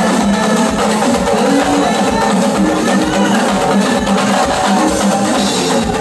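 Loud drum-led Yoruba festival music with a steady, continuous beat.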